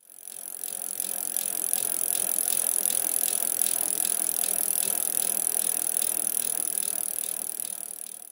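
Bicycle sound effect: a spinning bicycle wheel with a steady, even ticking over a hiss. It starts abruptly and fades away at the end.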